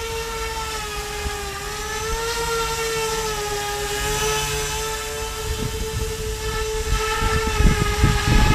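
Z-2 RC bicopter's two electric motors and rotors hovering: a steady whine whose pitch wavers slightly. A low rumble of wind on the microphone builds over the last few seconds.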